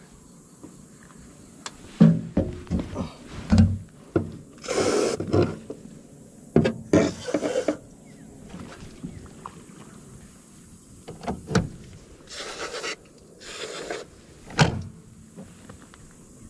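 Aerosol wasp and bee spray hissing in about four short bursts, each lasting under a second, with a few sharp knocks from handling on the aluminium boat deck.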